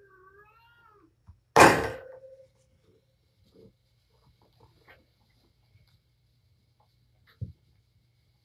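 A cat meows once, faint and wavering, then a single loud thud with a short ringing tail comes about a second and a half in; a soft knock follows near the end.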